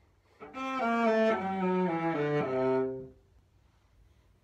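Cello playing a short descending phrase of several bowed notes, starting about half a second in and stopping about three seconds in.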